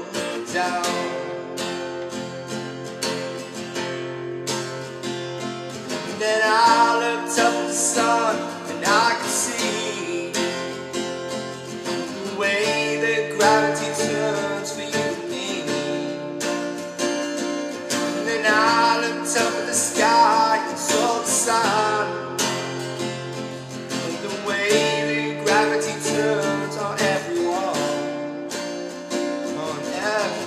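A man singing to his own strummed acoustic guitar. The guitar plays steady strummed chords throughout, and the voice comes in and out in phrases.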